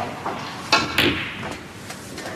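A snooker shot: sharp clicks of the cue tip and the phenolic balls striking, two of them about a quarter second apart a little under a second in.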